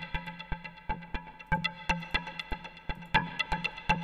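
A modular synth patch of the Kodiak Morph Filter's resonant filter banks pinged by clock-divided gates and shaped by low-pass gates, giving tonal percussion: a fast, steady rhythm of short pitched plucks that ring briefly.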